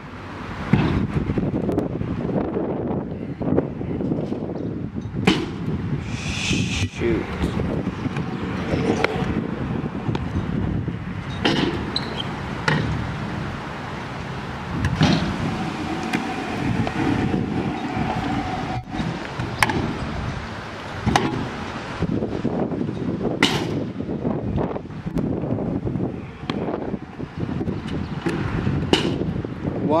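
Stunt scooter wheels rolling over concrete and a metal quarter pipe, with a continuous rumble and scattered sharp clacks and knocks from deck and wheel impacts, and wind on the microphone.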